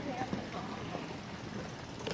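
Faint voices of people nearby and footsteps on a pier walkway, over light outdoor ambience.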